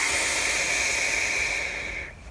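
A long draw on a vape, a Pulse mod topped with an Athena rebuildable atomiser: a steady hiss of air pulled through the firing coil, fading out near the end.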